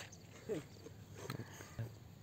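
Faint, brief animal calls: a few short cries, one sliding downward about half a second in, with a few light clicks between them.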